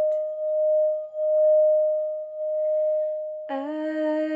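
Tibetan singing bowl played by circling a wooden mallet around its rim, giving one steady, sustained tone that swells and fades in loudness. A woman's singing voice comes back in over it near the end.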